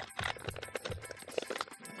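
Light, irregular clicking and tapping as aluminium filler rods and the diamond-plate aluminium tank are handled on a metal bench, with background music.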